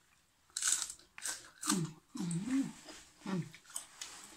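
Crisp raw napa cabbage stem being bitten and chewed, a run of sharp crunches. Short hummed voice sounds come between the bites.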